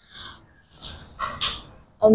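Soft whispering and breathy voice sounds from a child sounding out the next word under her breath while reading aloud, in a few short hissy bursts without full voice.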